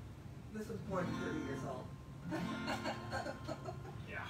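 Acoustic guitar played in two short spells of ringing chords, the first starting about half a second in and the second a little past halfway, with low talking mixed in.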